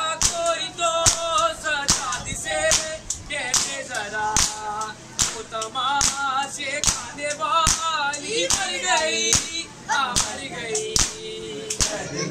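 A group of mourners beating their bare chests with their open hands in unison (matam), sharp slaps at an even beat of about two a second, while a noha, an Urdu lament, is sung over them.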